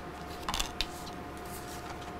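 Tarot cards being dealt from the deck onto a wooden tabletop: a brief card slide about half a second in, then a light tap.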